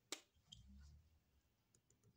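A sharp click just after the start, then a few faint clicks and a soft low rustle, from a hand handling a marker at a paper sheet.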